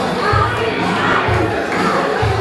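Crowd of spectators shouting and cheering over background music with a low beat about once a second.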